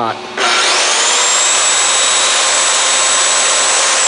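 A 15-amp corded SKIL circular saw started up and running free: it kicks in about half a second in with a whine that rises quickly as the blade spins up, runs steadily, then begins to fall as it winds down at the very end. Its start-up surge pushes the power station feeding it to about 4,700 watts without tripping.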